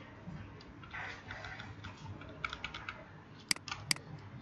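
Computer keyboard keys and a mouse clicking: a quick run of light taps about two and a half seconds in, then two sharp clicks near the end.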